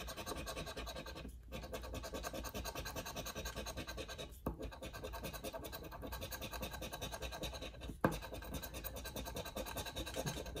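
A large scratcher coin scraping the coating off a scratch-off lottery ticket in fast strokes, with short breaks about a second and a half and four and a half seconds in. A single sharp tap near eight seconds.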